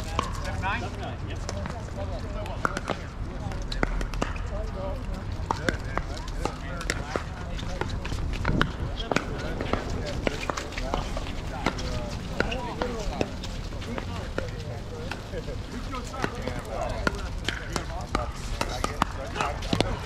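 Pickleball paddles striking the plastic ball in doubles rallies: sharp pops scattered throughout, some close and some from neighbouring courts, with players' voices in the background.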